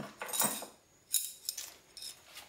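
Light metallic clinks and rattles of the metal parts of a Dillon XL650 reloading press's priming system being handled, a few separate clinks with a short ring, at the start, around half a second in and just past a second in.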